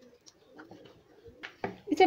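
Wooden rolling pin rolling wheat dough thin on a wooden board: quiet rubbing with a few soft knocks near the end.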